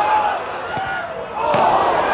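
Shouts from players and a small football crowd, with a sharp strike of the ball about one and a half seconds in, after which the shouting swells.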